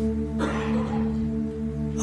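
Soft sustained ambient pad chord, several notes held steady without change, the kind of keyboard or synth bed a worship band plays under a prayer.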